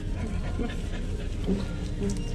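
Cardigan Welsh corgi panting, over a steady low hum.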